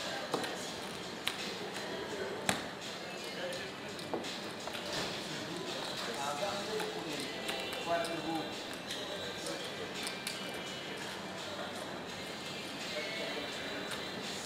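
Roulette chips clicking as they are stacked and set down on the table, a few sharp clicks among them, over a steady murmur of casino chatter.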